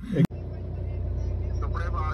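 Steady low hum of a car's engine and running gear heard from inside the cabin. A voice with a wavering pitch starts near the end.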